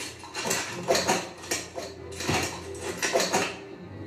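A quick run of clattering knocks and clicks, about a dozen in four seconds, coming in small clusters.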